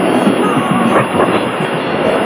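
Shortwave broadcast of Rádio Nacional on 6180 kHz playing through a receiver's speaker: a faint program under heavy, steady static and fading noise.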